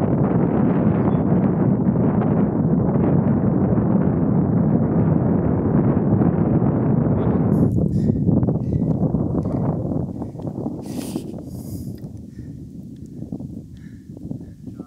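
Wind buffeting the camera microphone: a steady low rumble that eases off about eight seconds in and fades further toward the end.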